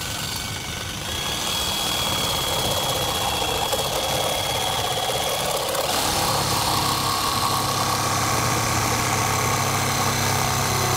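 Cordless jigsaw sawing through wooden hull planking, running steadily throughout. About six seconds in, the sound changes to a lower, steadier hum.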